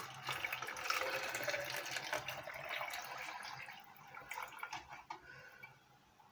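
Cooled brine poured in a stream into a cut-off plastic bottle, splashing as it fills; the stream thins and dies away about four seconds in, leaving a few faint drips.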